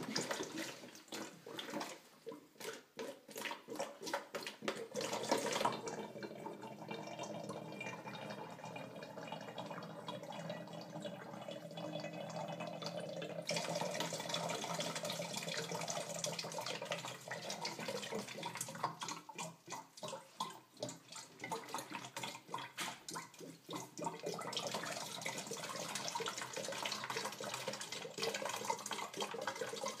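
Water with a layer of cooking oil draining from one upturned plastic bottle into another through a joining connector, gurgling steadily.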